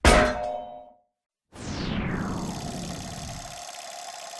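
Intro sound effects: a single metallic clang with a ringing tail that dies away within about a second, then, after a brief silence, a falling sweep that settles into a steady tone.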